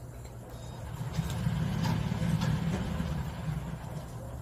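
A low rumble swells up about a second in and dies away near the end, over a few faint crunches of a cat chewing dry kibble.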